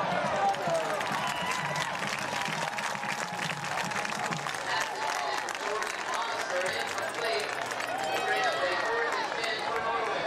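Football stadium crowd: many spectators talking and calling out over one another.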